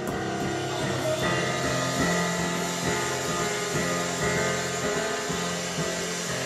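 Digital piano playing full sustained chords, which change about once a second.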